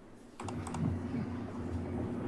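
A few quick laptop keyboard clicks, starting about half a second in, over a steady low room hum.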